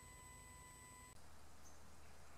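Near silence: a faint steady whine fades out about a second in, then faint quiet outdoor background noise with a low hum.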